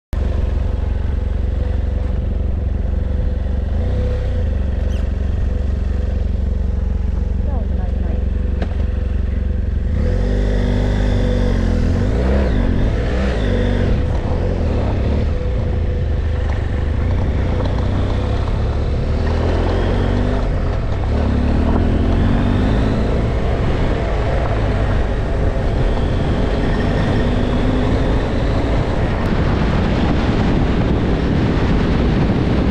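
BMW F800GS adventure motorcycle's parallel-twin engine running while riding, its pitch rising and falling from about ten seconds in as the throttle changes, with steady wind rumble on the microphone.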